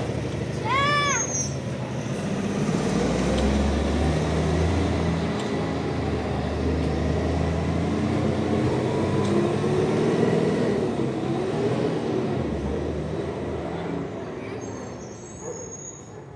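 Diesel garbage compactor truck pulling away and driving off down the street, its engine note rising and falling, then fading over the last two seconds. A brief high-pitched call sounds about a second in.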